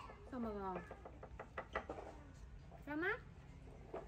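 Two short wordless vocal sounds, one falling in pitch about half a second in and one rising near three seconds, with a run of quick mouth clicks from chewing food between them.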